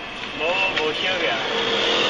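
Street traffic, with scooters and cars passing, picked up by a car's dashcam microphone: a steady rushing noise that grows louder toward the end, with a brief muffled voice about half a second in.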